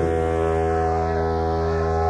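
Live noise-punk band holding a droning distorted chord over a steady bass note, with no drums, a slow swirling sweep moving through the tone.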